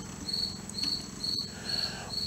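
A cricket chirping steadily outdoors, short high chirps repeating about twice a second over a faint low hum.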